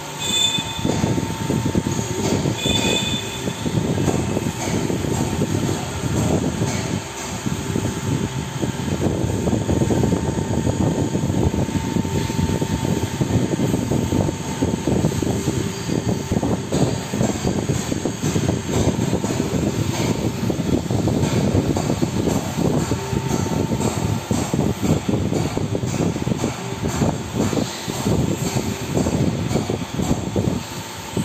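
Continuous loud mechanical rumble with a steady hum running underneath, like machinery running.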